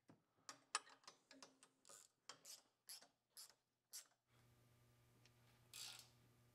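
Faint, irregular clicking of a hand wrench turning a crash-guard mounting bolt, a few clicks a second, stopping about four seconds in. A faint steady hum follows.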